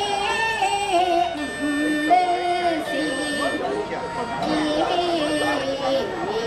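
Nanyin (Southern music) ensemble: a woman sings long, drawn-out vowels that slide and waver between notes, accompanied by pipa, long-necked plucked lute, end-blown dongxiao flute and erxian bowed fiddle.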